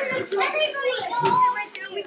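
Several children's voices chattering and calling out over one another.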